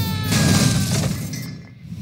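A crash with glass shattering. It hits hard at the start, rings briefly and dies away over about a second and a half.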